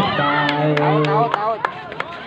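A volleyball being struck during a rally: about four sharp slaps within a second and a half, with a man's long drawn-out call over them.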